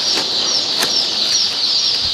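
A room full of day-old chicks peeping all at once, a dense, high chorus of overlapping cheeps, with a few light taps as a cardboard chick shipping box is handled.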